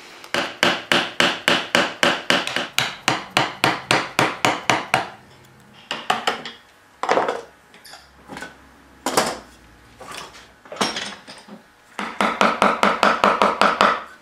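Carving gouge driven into a wooden hinge piece with quick light mallet taps, about four a second, then a few single taps, then another fast run near the end: a cove is being cut in the new hinge piece so the old knuckles stop binding against it.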